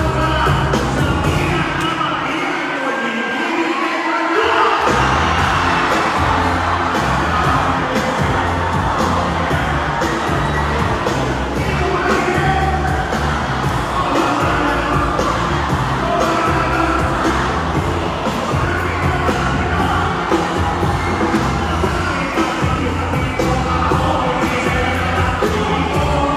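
Live rap performance through a stage PA: a track with a heavy, pulsing bass beat, with a large crowd cheering and shouting along. The bass drops out about two seconds in and comes back hard about five seconds in.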